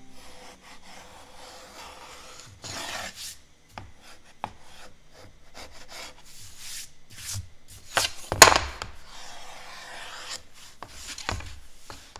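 A sharp chisel scraping along the edges of wood panels in repeated rasping strokes, shaving off excess pre-glued maple edge banding. There is one sharp knock a little past eight seconds in.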